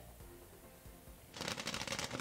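Freshly popped popcorn spilling out of a tipped commercial popcorn kettle onto a metal tray: a dense, rapid rattle of light pieces that starts about two-thirds of the way in.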